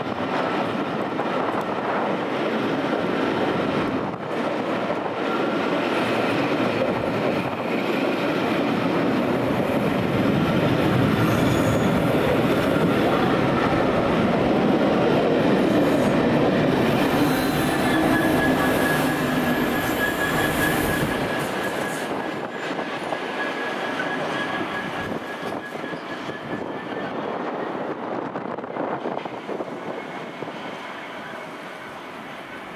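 Rake of railway passenger coaches running past close by, a loud steady rumble of wheels on rail with clattering over the rail joints. A thin high wheel squeal rings for a few seconds past the middle, then the rumble slowly fades as the train draws away.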